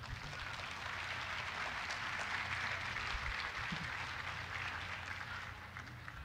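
Audience applauding: many hands clapping, building up over the first second, holding steady, then dying away near the end.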